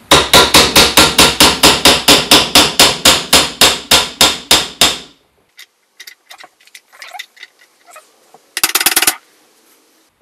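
A hammer tapping rapidly and evenly on the end of the Skywatcher NEQ6 mount's RA axis shaft, about five blows a second for some five seconds, driving the shaft and its new timing pulley back into the housing. A few light clicks follow, then a short clatter near the end.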